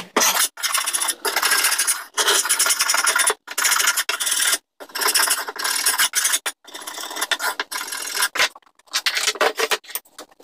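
Hand scraper blade scraping dried glue off a glued-up cherry wood panel, in repeated strokes of about a second each with brief pauses between them.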